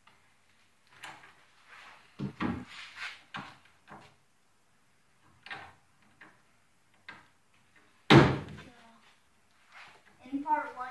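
Metal boat ladder being folded and moved against the boat, clanking and rattling: a cluster of knocks about two to three seconds in, a few lighter ones after, and one loud clank with a short ringing just after eight seconds.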